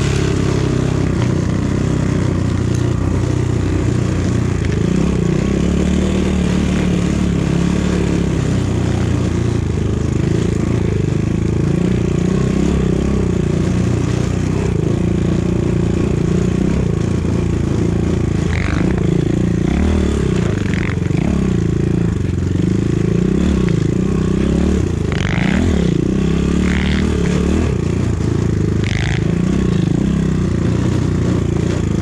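250 cc enduro motorcycle's single-cylinder engine running under load while riding through snow, its revs rising and falling, held in first gear because the gear shift lever is broken. A few short clattering sounds come in the second half.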